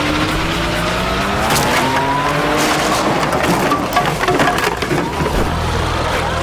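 Car engine revving hard, its pitch climbing over the first two and a half seconds as the car accelerates, with tyres skidding on tarmac.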